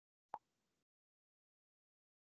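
Near silence with a single short click about a third of a second in.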